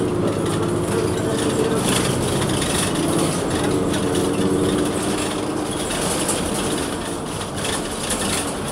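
Cummins Westport ISL-G natural-gas engine and drivetrain of a New Flyer XN40 transit bus, heard from the rear of the passenger cabin, running under way with a steady drone over road rumble.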